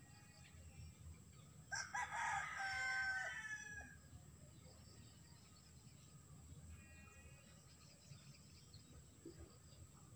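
A rooster crowing once in the background, about two seconds in, the crow lasting about two seconds. A fainter, shorter call follows near seven seconds.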